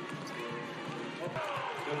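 Indoor basketball game sound: arena crowd noise and music over the PA, with a ball bouncing on the court. A commentator's voice comes in during the second half.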